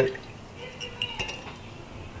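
Year-old Coca-Cola draining from a tipped glass jar through a wire mesh strainer into a glass measuring cup: a faint trickle and drips with a few light clinks of glass.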